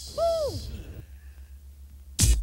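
A man's single short, high falsetto hoot, about half a second long, its pitch rising then falling. A faint low hum follows.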